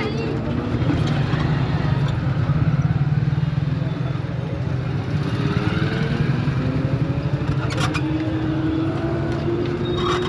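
Busy market street ambience: a motor vehicle engine runs close by, its pitch slowly rising through the second half, over the voices of people passing.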